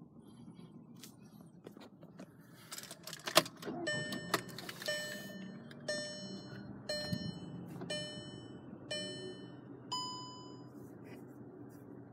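A 2010 Volkswagen Tiguan's dashboard warning chime, a pitched electronic tone repeating about once a second six or seven times, followed by one higher beep near the end. A few sharp clicks and a rattle come just before the chimes start.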